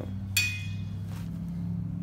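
A single sharp metallic clink with a brief ring about a third of a second in, as drum-brake hardware (a steel return spring just pulled off the brake) is handled. A steady low hum continues underneath.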